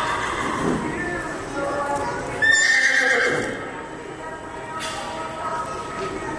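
A horse whinnying once, a high call with a shaky, falling pitch that starts about two and a half seconds in and lasts about a second, the loudest sound here, over background voices.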